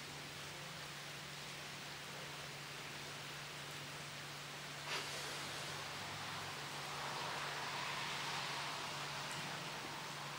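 Two rubber balloons joined by a tube: a short click about halfway through as the tube is opened, then a soft rustling hiss for a few seconds as air passes from the smaller balloon into the larger one. A faint steady hum and hiss lie underneath.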